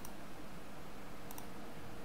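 Short sharp clicks of a computer being operated: one right at the start and a quick double click about a second and a half in, over a steady hiss of microphone room noise.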